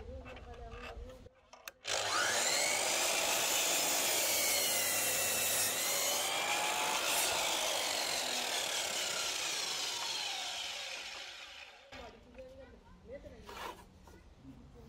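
DeWalt DWS780 mitre saw starting suddenly about two seconds in and cutting through a timber, its motor whine rising and dipping as the blade works through the wood, then winding down over about two seconds near the end.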